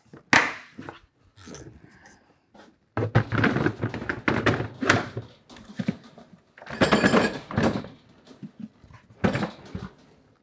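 Milwaukee Packout hard plastic tool cases being latched, lifted and set down: a sharp knock at the start, then several bursts of hollow plastic thunks and clatter.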